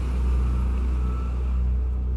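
Car engine running with a steady low rumble.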